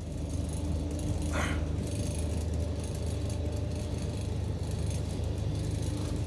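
Scania coach engine idling, a steady low drone heard inside the passenger cabin, with one short faint scrape about a second and a half in.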